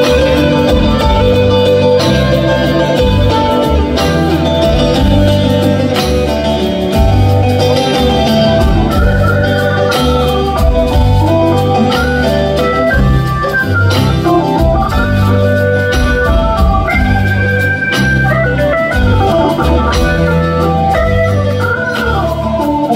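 Live band instrumental break: a Hammond organ plays chords, then a running solo melody from about halfway through, over a walking upright bass line and drums.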